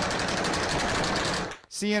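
Sustained automatic gunfire on a distorted amateur recording: a rapid, unbroken rattle of shots that stops about a second and a half in.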